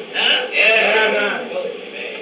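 A man's voice in a chanted, half-sung preaching delivery: one long, wavering phrase that rises and falls in pitch and then trails off, on an old recording with dull, narrow highs.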